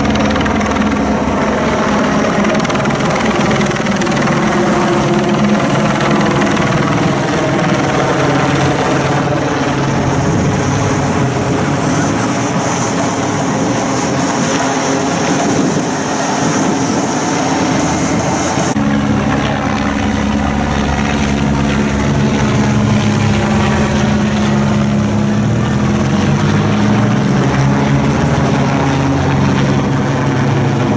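A helicopter running overhead, a steady rotor and engine drone, mixed with race traffic of motorbikes and team cars passing. The sound changes abruptly about two-thirds of the way through, at an edit cut.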